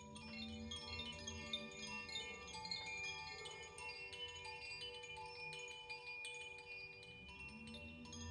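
Hanging cylindrical bamboo chimes, set swinging by hand so that their inner clappers strike the tubes: a continuous shimmer of many overlapping ringing tones with light tinkling strikes.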